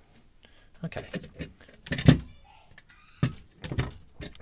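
A series of metal clicks and knocks as a mortise lock cylinder is handled and taken out of a ball-mount vise. The loudest knock comes about two seconds in, and a few more follow near the end.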